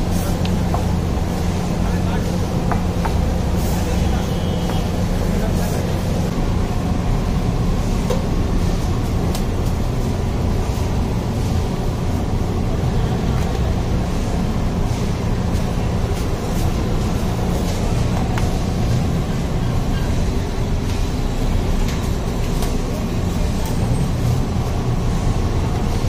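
Onions, tomatoes and spices frying on a large flat iron tawa under a loud, steady low rumble, with voices in the background.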